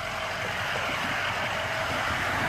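Steady rushing road noise of highway traffic, slowly growing a little louder.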